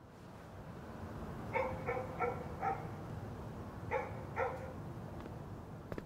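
A dog barking: four quick barks, then two more about a second and a half later, over a low steady background rumble that fades in at the start.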